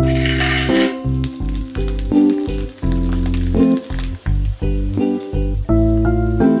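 Hot oil sizzling around dried papad strips as they fry in a steel kadai, loudest in the first second and then fainter, under background music with plucked notes and a steady beat.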